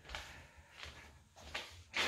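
Quiet room tone with a few faint soft knocks.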